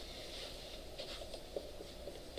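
Dry-erase marker writing on a whiteboard: faint, short scratchy strokes in a small room.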